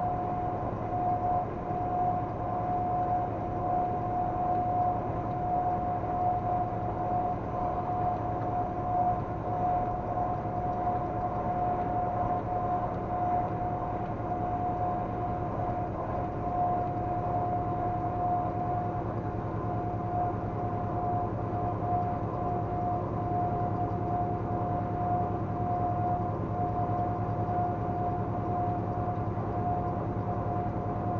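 Steady engine and road noise inside a vehicle cruising on a highway, with a constant high whine running over it.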